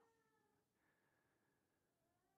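Near silence, a pause in the audio with only a very faint steady tone.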